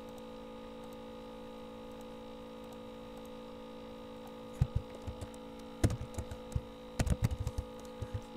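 A steady hum runs throughout. From a little past halfway, computer keyboard keys are pressed in an irregular run of sharp clicks as an equation is typed.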